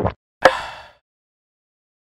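A single sharp plop about half a second in, fading out quickly.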